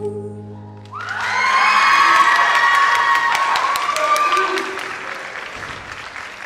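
The last sustained notes of the music die away, and about a second in an audience breaks into applause with cheering and high whoops, loudest soon after it starts and fading toward the end.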